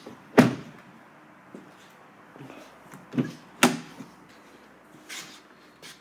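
Peugeot 5008 car doors being shut and opened: a sharp thud about half a second in, the loudest sound, then two more sharp knocks a little after three seconds in.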